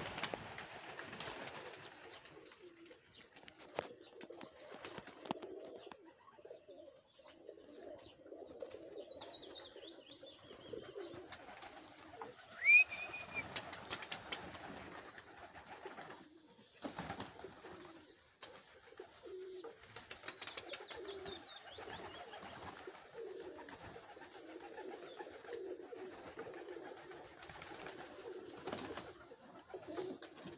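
A flock of domestic pigeons cooing continually. There is one short, high, rising chirp about thirteen seconds in, the loudest sound, and some faint high twittering just before it.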